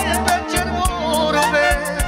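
Live band music in Romanian manele style: an instrumental break with a wavering lead melody over a steady drum beat and bass.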